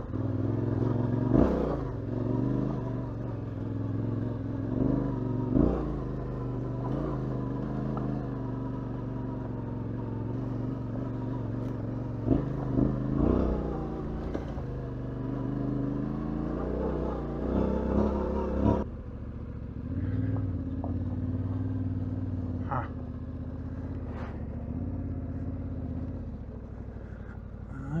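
Yamaha Ténéré 700 parallel-twin engine running as the motorcycle rides along a loose gravel road, its note rising and falling with the throttle, with a few short knocks. The sound drops suddenly and goes quieter about two-thirds of the way in.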